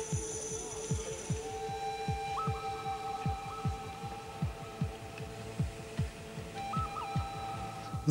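Background music: long held notes that change pitch a couple of times, over a soft, steady low pulse of about two to three beats a second.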